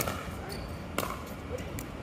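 Pickleball paddles striking a plastic ball in a doubles rally: a sharp pop right at the start and another about a second later, with fainter ticks between them.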